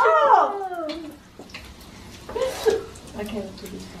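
Women's voices without clear words: a falling, laugh-like exclamation in the first second, then a few brief quiet murmurs and chuckles, with laughter starting at the very end.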